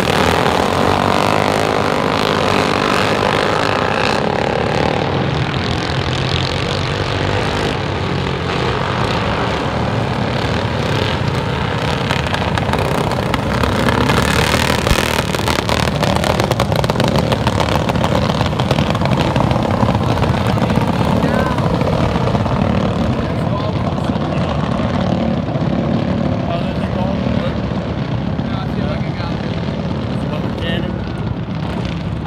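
A pack of racing lawn mowers running flat out around a dirt oval, their engines a steady, loud mass of sound that swells a little about halfway through as the pack passes close.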